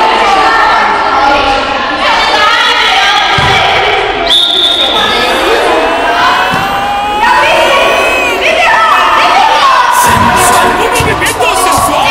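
A crowd of children shouting and cheering at a ball game, many voices overlapping and echoing in a large sports hall.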